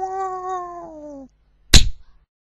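A long, wailing vocal note from the outro jingle, held steady, then sliding down in pitch and cutting off. After a short gap, a single loud, sharp crack near the end.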